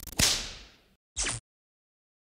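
Whip-crack whoosh sound effect for an animated title, fading out over about half a second, followed by a short second swish about a second in.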